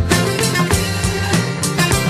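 Late-1960s rock band recording playing with a steady beat: drums, bass and guitar, with organ in the band's lineup.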